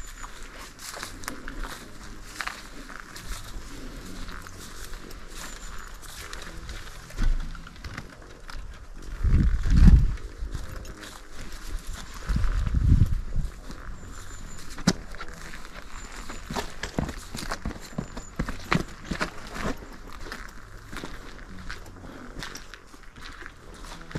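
Footsteps on concrete paving slabs and loose grit, a steady run of short scuffs and crunches. Two louder low rumbles stand out, about nine and twelve seconds in.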